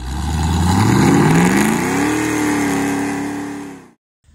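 An engine revving: its pitch climbs steadily for about two seconds, then holds at a steady high rev and fades out near the end.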